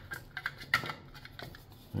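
Several light clicks and taps as a foam sponge brush and a small plastic paint mixing tray are handled, the sharpest a little under a second in.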